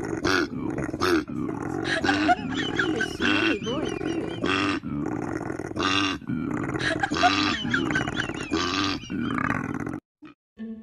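Koala bellowing: deep rasping grunts and snores repeated over and over with only brief breaks.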